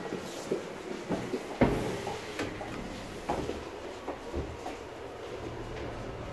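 Short clicks and knocks of a passenger stepping into a glass elevator car, with one sharp thump about one and a half seconds in. A low steady hum comes in near the end.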